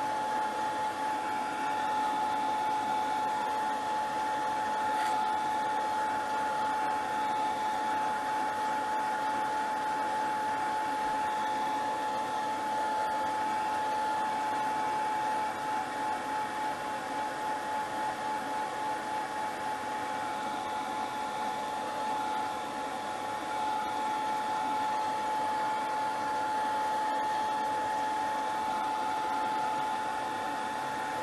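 Handheld hair dryer running steadily: a constant high whine over the rush of air, wavering a little in the middle as it is swept back and forth.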